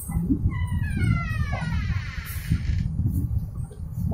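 An animal's single long call, starting about half a second in and falling steadily in pitch over roughly a second and a half, over a steady low rumble.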